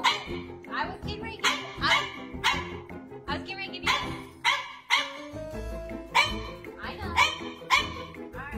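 French bulldog barking in a steady run of short barks, about two a second. This is demand barking at its owner, who has refused it more food.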